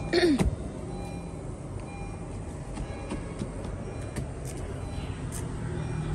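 Low, steady hum of a vehicle engine running. It opens with a brief, louder falling-pitched sound and has a few faint clicks scattered through it.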